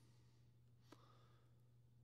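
Near silence: room tone with a low steady hum and one faint click about a second in.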